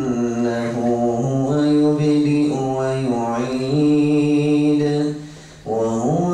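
A man's voice chanting Qur'an recitation in the melodic tajwid style, holding long steady notes joined by slow gliding ornaments. A short breath break comes near the end before the chant resumes.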